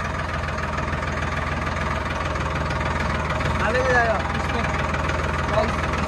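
Tractor engine running steadily as the tractor is driven, an even low drone at constant level.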